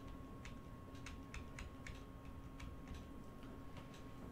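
Faint, irregular clicking at a computer, about ten clicks over four seconds, as moves are played out on an on-screen chess board, over a low steady electrical hum.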